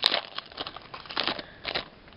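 Foil trading-card booster pack wrapper crinkling in short bursts as it is handled, stopping just before the end, with a sharp click right at the start.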